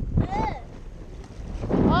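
Wind buffeting the camera microphone, a low rumble throughout, with a short high-pitched voice about half a second in and a voice saying "oh" near the end.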